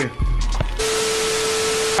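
Edited-in sound effect like TV static: a sudden, even hiss with one steady mid-pitched tone held over it for about a second, stopping abruptly. Before it, the low bass of background music and a couple of clicks.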